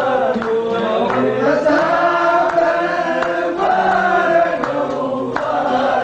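A man singing a melodic Arabic song in long, sustained, gliding phrases, accompanied by an oud.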